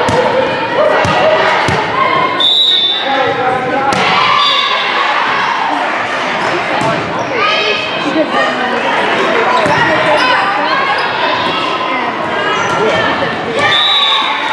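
Volleyball rally in an echoing gym: sharp ball hits and thuds among players' and spectators' voices. A short, high referee's whistle sounds about two and a half seconds in, and again at the end as the point finishes.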